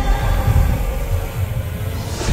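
Background music: held synth chords fading over a deep, pulsing bass rumble.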